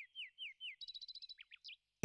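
Faint bird chirping: a run of short falling notes, about four a second, then a quick trill about a second in, and a few more falling notes.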